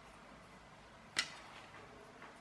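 A single short, sharp click of small toy-car parts being handled, about a second in, against quiet room tone.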